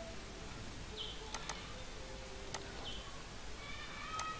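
Faint background with a few sharp clicks, typical of a computer mouse being clicked, and several short high chirps that fall in pitch.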